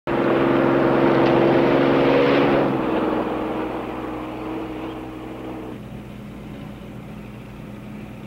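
A Jeep engine running at a steady pace as it drives along a road, loud at first and fading over the first few seconds to a low, steady drone.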